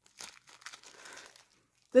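Small clear plastic zip bag crinkling as it is handled, rustling for about a second and a half.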